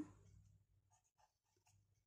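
Faint scratching of a pencil tip on graph paper as a point is marked, in a few short strokes.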